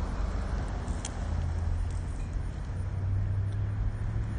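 A car's engine running on the street, a steady low hum that grows a little louder after about a second, over outdoor background noise.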